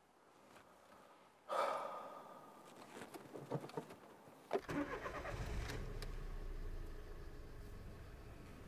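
Small clicks of a key at the ignition, then a Toyota car's engine starts with a sharp click about four and a half seconds in and settles into a steady low idle.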